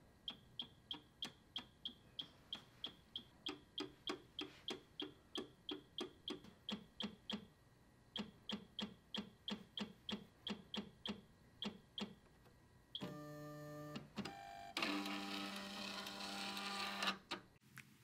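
BioTek ELx405 plate washer mechanism running faintly: a regular clicking, about three clicks a second, with a short break about halfway, then two spells of steady motor whirring near the end.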